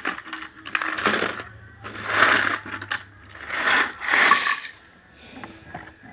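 A hand-held plastic toy shaken hard in four bursts, small pieces rattling and clattering inside it as it is shaken empty.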